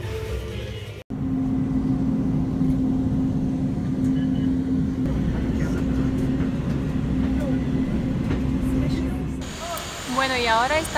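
Steady running noise of a vehicle heard from inside while riding: a constant droning tone over a low rumble. It cuts in suddenly about a second in and eases off near the end.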